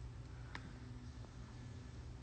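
Quiet room tone with a steady low hum and one faint short click about half a second in.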